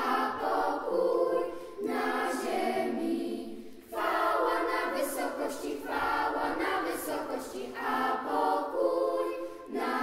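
Children's choir singing a Polish Christmas carol, in sung phrases with brief breaks between them.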